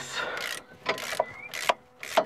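Ratchet with a 10 mm socket clicking in several short strokes as the bolt holding the brake hose bracket to the suspension strut is undone.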